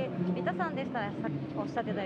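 Speech only: voices talking quietly, away from the microphone.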